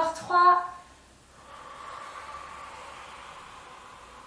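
A woman's brief vocal sound at the start, then a long, steady exhalation blown out through the mouth, lasting over two seconds and slowly fading: the out-breath that accompanies the effort of a Pilates leg lift.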